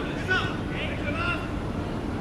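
Distant voices of young footballers calling out across the pitch, a few short shouts over a steady low background rumble.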